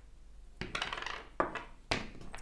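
Small wooden blocks clacking against each other and the wooden tray while being picked through: a cluster of light clacks about half a second in, then two sharper knocks.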